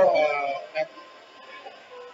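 A short exclaimed 'aey' from a person's voice, falling in pitch and lasting about half a second. It is followed by faint background music.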